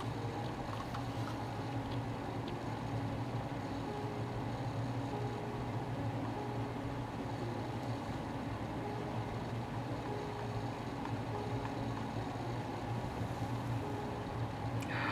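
Steady low background hum with a faint higher tone that comes and goes.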